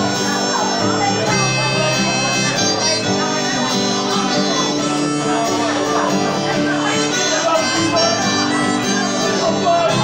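Harmonica playing the melody over a strummed acoustic guitar: an instrumental break between sung verses.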